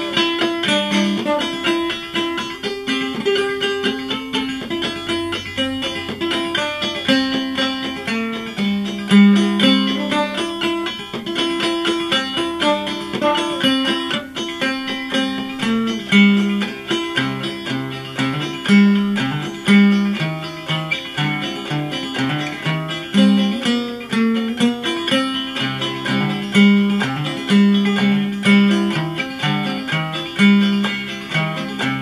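Homemade 5-string banjo with a motor-oil-can body, played clawhammer style: a continuous run of quick plucked notes in a steady rhythm.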